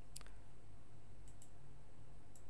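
Computer mouse button clicks: one near the start, then two quick ones a little over a second in, over a faint steady background hum.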